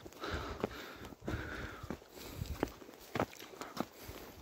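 Footsteps on a stony dirt path going uphill, irregular sharp steps about once a second, with a walker breathing hard, out of breath from the climb.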